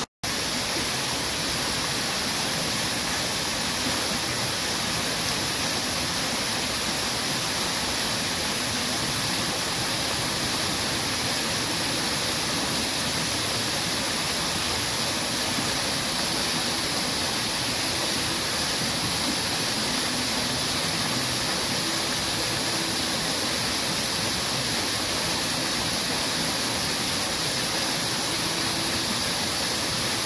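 Fountain water jets spraying and splashing down into the pool: a steady, dense hiss of falling water. It drops out for an instant just after the start, then runs on unchanged.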